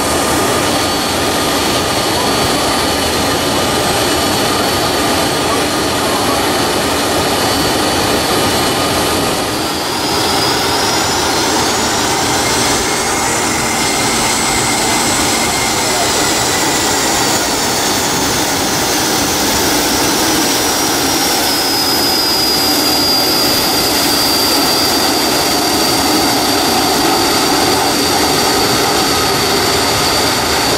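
Avro RJ85 air tanker's four turbofan engines running loudly and steadily as it taxis close by. A high whine rises about ten seconds in, then slowly falls back over the following ten seconds.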